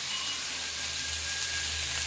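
Masala-coated fish shallow-frying in oil in a nonstick pan, sizzling steadily.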